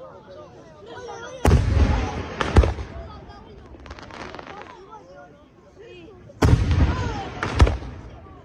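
Aerial firework shells bursting: two loud bangs about five seconds apart, each followed about a second later by a sharp second crack, with a burst of crackling in between. Crowd voices chatter underneath.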